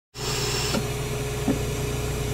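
Tape-rewind sound effect: a steady motorised whir with a low hum. It starts abruptly out of silence, with a brief hiss over it in the first part.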